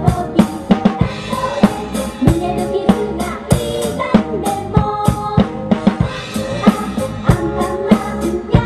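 A drum kit played hard in a dense rock beat, with kick drum, snare and cymbal hits throughout, over melodic backing music.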